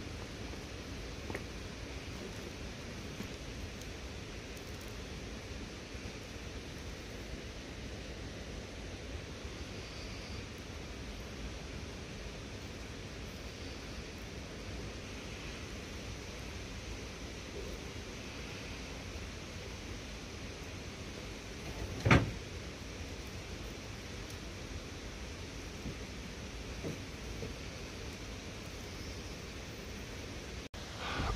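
Steady rushing outdoor background noise with no clear source, broken once by a single sharp knock about two-thirds of the way through.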